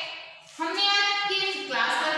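A group of young children reciting in unison in a drawn-out, sing-song chant, with a brief pause about half a second in before the next long held phrase.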